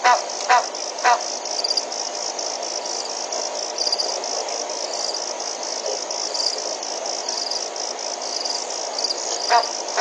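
Night chorus of crickets: a steady high-pitched trill with a fast even pulse. A series of short calls repeated about twice a second sounds in the first second and starts again near the end.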